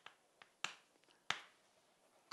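Chalk on a chalkboard: a few short, faint taps and strokes as a word is written, the two most distinct about two thirds of a second and a little over a second in.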